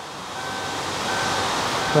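A steady rushing noise that swells over the first second and then holds, with faint thin tones coming and going above it.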